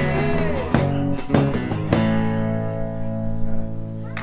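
Acoustic blues band playing the end of a song on acoustic guitars, electric bass and cajon: a held sung note falls away, the band hits three closing strokes about half a second apart, and the last chord is left ringing.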